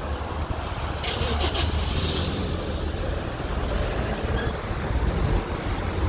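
Street traffic noise: a steady low rumble of road vehicles, with a brief hissing rush about a second in that lasts about a second.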